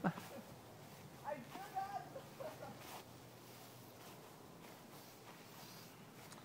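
Faint, distant children's voices calling out briefly in the first half, over quiet outdoor background, with a small click at the very start.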